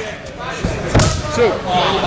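A sharp slap on the wrestling ring canvas about a second in, with a lighter one just before it, over shouting voices.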